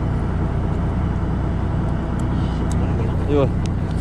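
Fishing boat's engine running steadily, a low even hum under sea and wind noise, with a few light clicks in the second half.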